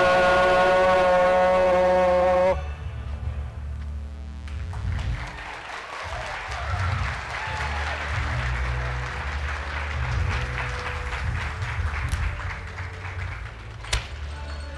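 A chorus of sailors' voices with accompaniment holds the last chord of a sea shanty, then cuts off sharply about two and a half seconds in. Audience applause follows and carries on over a low rumble.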